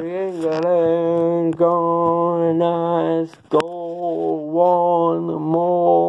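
A man singing a wordless "na na na" chant-style tune in long, held notes. There is a sharp knock about halfway through.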